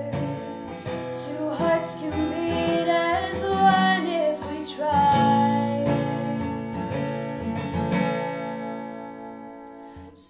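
Acoustic guitar strummed under a woman's sung melody, with one long held note in the middle. The playing and voice die away over the last couple of seconds.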